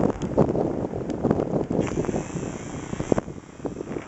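Wind buffeting the camera microphone in uneven gusts. A steady high hiss joins about halfway through.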